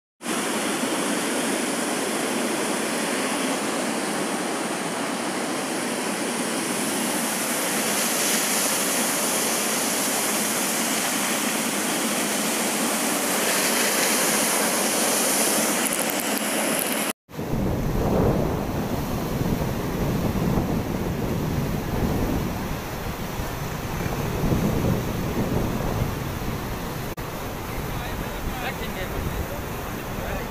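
Steady rushing roar of muddy floodwater pouring over a cliff as a waterfall. After a sudden cut about two-thirds of the way in, floodwater runs across a road, with wind buffeting the microphone in uneven gusts.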